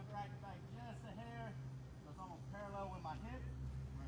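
Speech only: a man's voice talking, too faint and unclear for the words to be made out, over a steady low hum.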